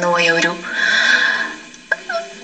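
A single person's voice speaking: a drawn-out pitched syllable, then a short breathy hiss.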